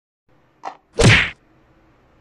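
Two sudden dull knocks, a short one followed by a much louder, longer one about a second in, with no ringing after them.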